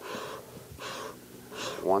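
Bellows of a beekeeping smoker squeezed three times, short puffs of air about 0.8 s apart, fanning freshly lit paper and cedar shavings to get the fuel burning.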